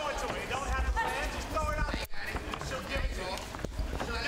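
Indistinct voices calling out from around the cage, over a steady low arena rumble.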